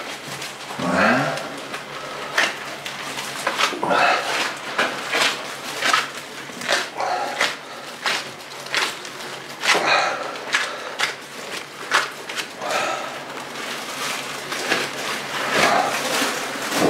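Gloved hands pressing and smoothing minced wild boar meat onto a sheet of pig skin, making wet squelching and slapping sounds in short, irregular strokes.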